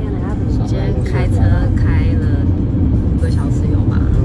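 Steady low road and engine rumble inside the cabin of a car driving at highway speed, with voices talking over it.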